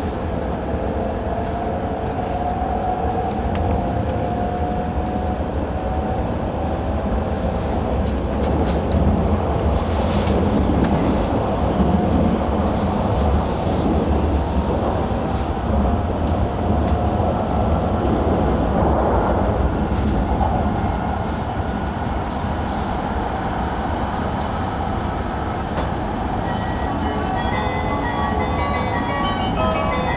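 Shinkansen running at speed, heard from inside the passenger cabin: a steady low rumble of the train on the track, with a faint motor whine that slowly rises in pitch over the first several seconds. Near the end a short run of high electronic notes comes in.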